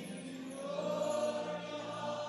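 Choir and congregation singing long held notes of a gospel worship song.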